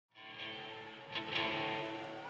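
Electric guitar ringing through an amplifier on sustained notes, played again just over a second in.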